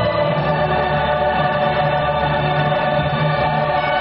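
Choral music: a choir singing long held notes over a steady low accompaniment, at an even loudness.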